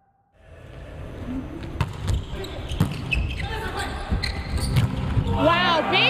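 A volleyball bounced on the hard court floor several times by a player getting ready to serve, in a large arena with crowd noise building behind it.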